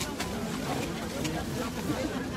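Crowd chatter: several voices talking at once at a moderate level, none standing out, with a few faint clicks.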